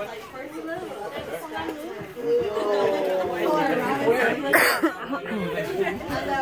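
Several people chattering and talking over one another, louder in the second half, with a short sharp rustle about four and a half seconds in.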